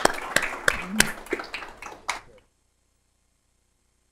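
Applause: a spread of hand claps with a few sharp single claps standing out, thinning out and then cutting off abruptly to silence a little over two seconds in.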